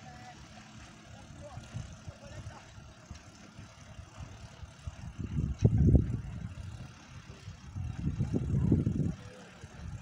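Wind buffeting the microphone in irregular low gusts, strongest about five seconds in and again near the end.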